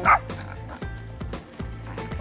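A dog barks once, sharply, right at the start, over steady background music.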